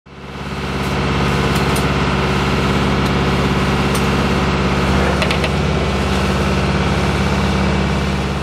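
A sailboat's inboard engine running steadily under way, heard from inside the cabin as a low, even drone that fades in over the first second. A few light ticks sound over it.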